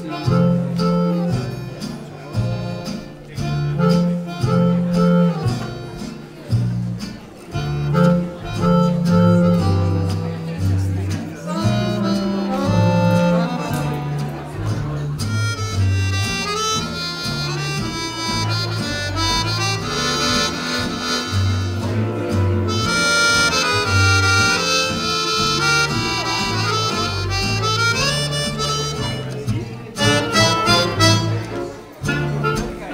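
Small acoustic swing-jazz band of accordion, clarinet, guitar, upright bass and piano playing a 1930s-style tune, with a walking bass and rhythmic chords. About halfway through, a sustained lead melody line comes in over the rhythm.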